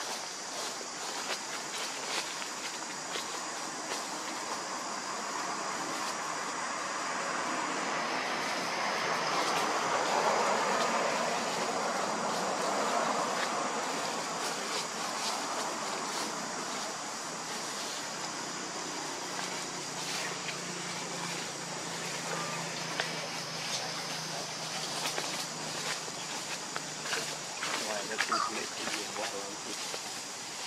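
A vehicle passing: a broad rushing noise that swells to a peak about ten seconds in, then fades. Under it runs a steady high-pitched drone, and a low steady hum sets in during the second half.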